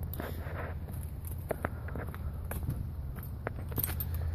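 Footsteps on asphalt, a few soft scuffs and ticks over a steady low hum.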